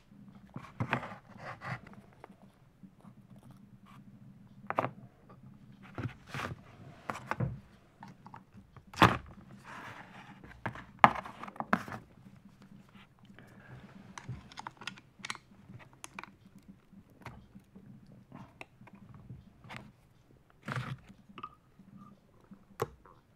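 Hand disassembly of a Makita HR2400 rotary hammer's chuck: irregular clicks, knocks and rustles of plastic and metal parts being handled and taken off, with a couple of louder sharp knocks near the middle.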